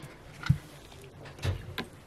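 Three light knocks and clicks of small objects being handled and set down on a work table.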